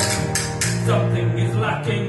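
Mixed choir singing with instrumental accompaniment, a steady run of sustained notes with sharp rhythmic attacks.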